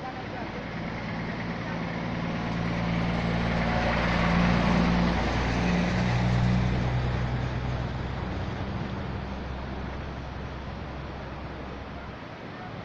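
A road vehicle drives past close by. Its low engine note and rushing noise build to a peak about four to six seconds in, the note drops in pitch as it goes by, and the sound then fades.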